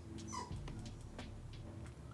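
A single brief high-pitched squeak, rising then falling, about a third of a second in, over faint steady low tones.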